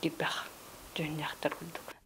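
Speech only: a woman speaking softly in short phrases, with pauses between them.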